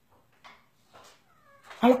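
A pause in a woman's speech. There are faint small sounds and a short, faint falling tone about one and a half seconds in, then she starts speaking again near the end.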